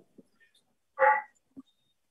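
A single short bark, about a second in, with a few faint taps of a marker on a whiteboard around it.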